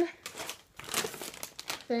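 Plastic potato chip bags crinkling as they are handled and swapped, a run of rough crackles through the middle.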